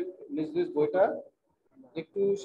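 A person speaking in short, quick phrases for about the first second and a half, then a pause.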